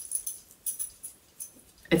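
A few light, sharp clicks and taps of small cake decorations being handled and set in place, with quiet gaps between.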